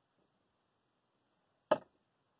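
A single short, sharp knock near the end, against near silence.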